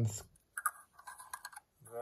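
Light clicks and small scraping sounds of a lens-mount adapter ring being seated by hand on the rear of a Tair-11A lens, for about a second in the middle.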